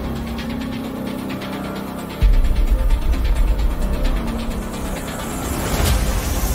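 Dramatic background music: sustained low notes, joined about two seconds in by a sudden deep bass swell that makes it louder.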